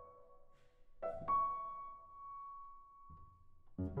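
Bösendorfer grand piano played softly: a chord struck about a second in is held and left to ring down, and near the end a louder passage of quick repeated notes begins.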